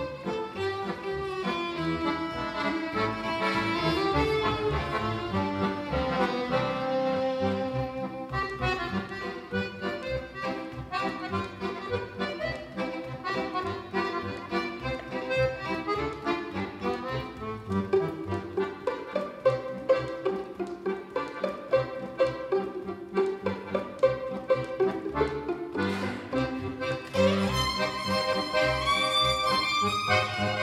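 A violin and a piano accordion playing a tune together, the violin carrying the melody over the accordion's chords. From about eight seconds in, the playing turns more rhythmic, with sharp accented beats.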